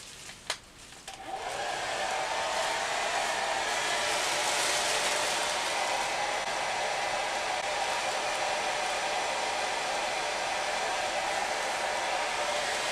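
Revlon hand-held hair dryer: a click, then the motor spinning up over about a second and running steadily, blowing into a plastic bag tied over the head.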